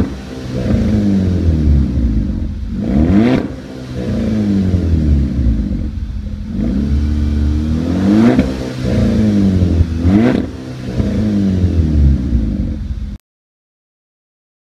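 Volkswagen Golf VI GTI's turbocharged 2.0-litre four-cylinder through an HMS flap sports exhaust, revved while standing: about four quick revs a few seconds apart, each rising sharply and falling back to idle, in a concrete underpass. The sound cuts off suddenly about a second before the end.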